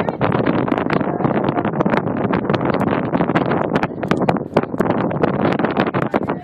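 Loud wind buffeting the microphone: a dense, unbroken rumble full of short crackles.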